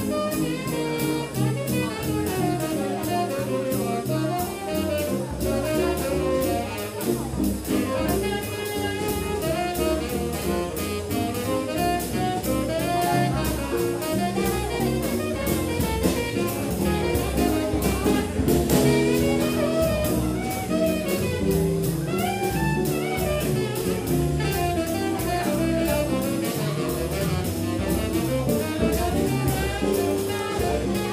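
Small jazz band playing live in swing time: tenor saxophone lines over guitar, upright bass and a drum kit keeping a steady cymbal beat.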